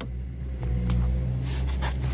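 Ford Focus ST engine idling with a steady low rumble, and a few light knocks from handling in the engine bay.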